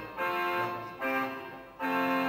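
Slow music on a keyboard instrument: a chord about a second, each fading, then a louder chord held near the end.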